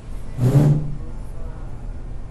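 Skid-steer loader's engine running steadily, with one brief, loud rev about half a second in.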